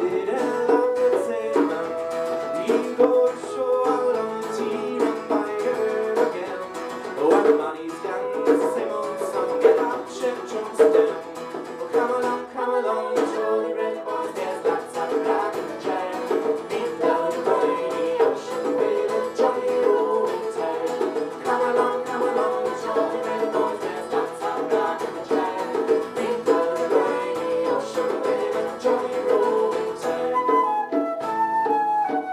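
Live acoustic folk band playing an instrumental passage of an Irish song: steadily strummed acoustic guitar under a melody line, with a flute playing over it.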